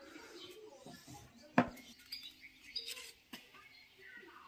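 Light handling noises with one sharp knock about one and a half seconds in and a softer one near the end, as mushrooms are moved about on a mesh drying sieve. Birds chirp faintly in the background.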